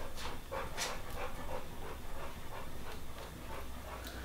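A bulldog breathing noisily, a run of short breaths about two a second.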